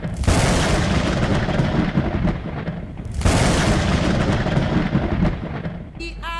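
Two thunderclap sound effects, one right at the start and another about three seconds in. Each is a loud crash that rumbles and fades away.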